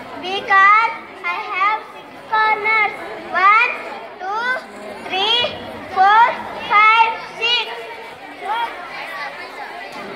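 A child's voice reciting in short phrases into a microphone, the pitch rising sharply on many phrases.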